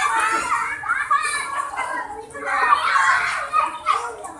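Young children's voices chattering and calling out as they play.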